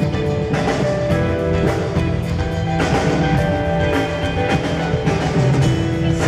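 Live rock band playing an instrumental passage, a drum kit beat over sustained chords, with no singing.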